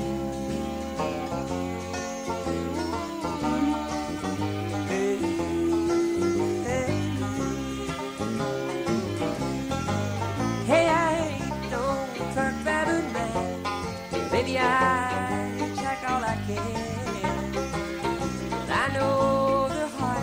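Live bluegrass band playing an instrumental break with the banjo prominent, over acoustic guitar, mandolin, fiddle and a steady electric bass line.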